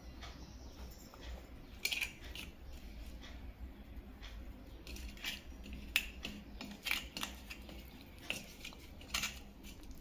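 Scattered faint clicks and taps as peeled boiled eggs are rolled and pressed by hand in pepper and salt on a stainless steel plate, egg and fingers knocking lightly against the metal.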